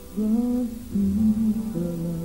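A woman singing a wordless, hummed melody into a microphone over guitar, with new held notes coming in about a fifth of a second and a second in.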